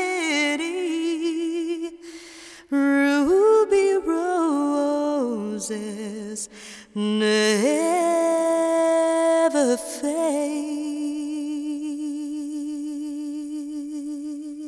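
A woman singing slow, sustained phrases with short breaks between them, then one long held note with vibrato that fades away near the end.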